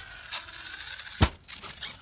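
Radio-controlled car landing hard on the grass after a ramp jump: one loud thud with a clatter about a second and a quarter in.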